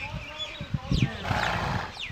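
A horse snorts: a short, noisy blow through the nostrils a little past the middle, lasting about half a second. Short high chirps falling in pitch come twice, from birds.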